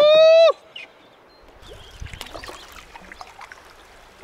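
A man's short rising "woo" whoop in the first half-second, then quiet water splashing and small knocks of a canoe being paddled on a river.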